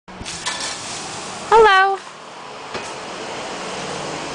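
A short, high voiced sound about one and a half seconds in, bending briefly and then held, is the loudest thing. Around it are faint scrapes and a couple of clicks from a shovel working a pile of branches and boards on concrete.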